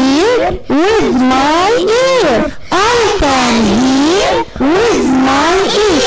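Young children's voices singing together in unison, a melody in long smooth phrases of a second or two, with short breaths between them.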